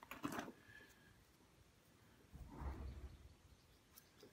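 Near silence with a few faint clicks of the hand controls on a Boxford AUD metal lathe's carriage and cross-slide being turned, and a brief soft sound about two and a half seconds in.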